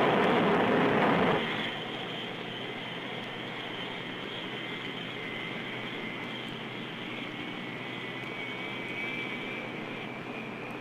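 The Northrop YB-49's turbojet engines running. A loud rush of jet noise drops sharply about a second and a half in to a steadier, quieter run with a high whine, and a second whine rises a little near the end.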